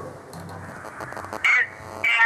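A pause between speakers: low background hum and hiss, broken by one short vocal sound from a person about one and a half seconds in.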